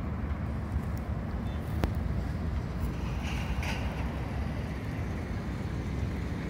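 Steady low rumble of road traffic from a nearby road interchange, continuous and even, with a faint tick or two.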